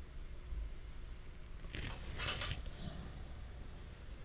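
Faint low hum with two soft swishes about two seconds in: a watercolor brush stroked across paper.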